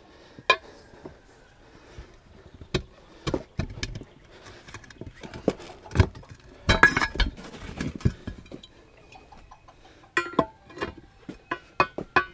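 Steel pry bar clinking and knocking against a steel split rim and its lock ring as the ring is levered into place on a stiff 12-ply tire. The strikes are irregular, with a cluster about halfway through and another near the end.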